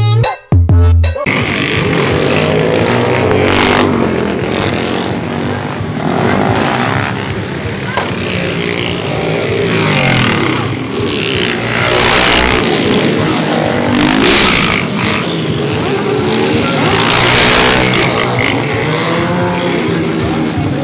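Motorcycles revving and riding past one after another, engine pitch rising and falling, with short bursts of louder noise a few times. Music plays briefly at the very start.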